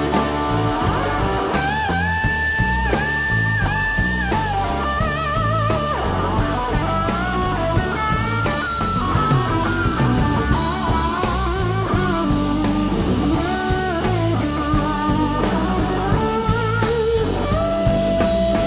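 Live rock band in an instrumental jam: a lead guitar plays sustained notes with bends and vibrato over bass guitar and drums.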